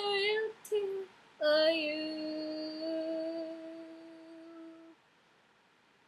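A woman singing unaccompanied: a couple of short sung syllables, then about one and a half seconds in a single note held steady for about three and a half seconds, growing quieter until it stops, followed by near silence.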